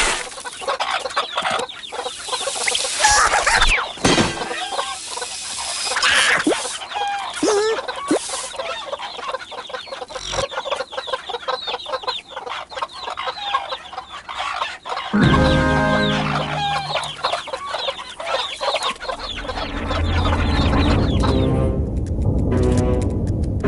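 Cartoon soundtrack of non-verbal character vocalisations and comic sound effects: many short gliding calls and clicks. About two-thirds of the way in, a steady low pitched drone starts, with music under it toward the end.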